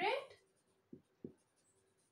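Marker writing on a whiteboard: faint scratching of the tip, with two short knocks about a second in as the strokes land on the board.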